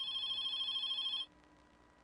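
Telephone ringing with a steady high-pitched ring, an incoming call on the show's call-in line; it cuts off about a second and a quarter in.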